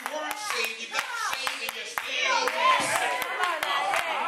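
Congregation clapping, the claps uneven and frequent, under several raised voices calling out.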